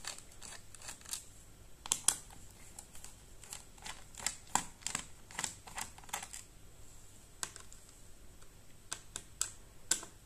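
Phillips screwdriver loosening the bottom-cover screws of a Dell Latitude 7290 laptop: a faint, irregular run of light clicks as the tip works in the screw heads and turns them against the plastic case.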